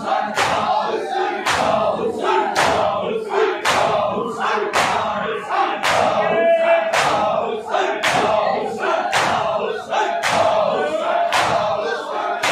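A large crowd of men beating their chests (matam) in unison: sharp open-hand slaps on bare chests, nearly two a second, with the crowd's voices chanting in time between the strikes. About halfway, one voice holds a long note over the rhythm.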